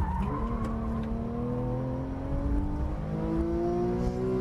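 Porsche 911 Carrera S (991) naturally aspirated 3.8-litre flat-six accelerating hard out of a corner, its pitch climbing steadily through one gear.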